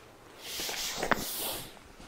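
A long breath blown out, with a single sharp crack about a second in as a chiropractic thrust lands on the upper back: a thoracic spine joint popping.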